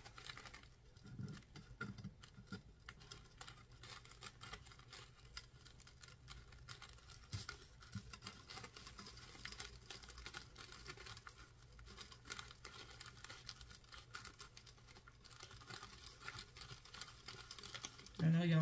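Faint, rapid scratching and rustling of hands rubbing paper-backed anti-cat scratch tape onto a stainless steel tumbler.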